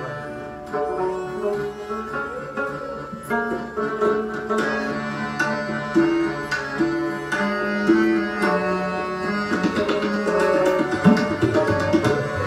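Instrumental passage of Sikh kirtan: harmonium and rabab playing a melody in held and changing notes over a tabla accompaniment. The tabla strokes grow denser near the end.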